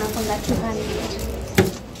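Voices talking in the background, with a single sharp knock about one and a half seconds in as items on the stall are handled.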